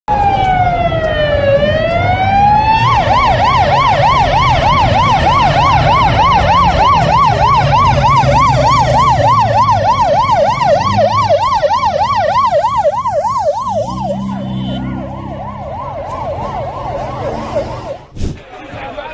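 Ambulance siren sounding a slow wail for the first few seconds, then switching to a fast yelp of about three sweeps a second, growing fainter over the last few seconds.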